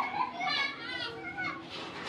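High-pitched background voices talking, child-like in pitch.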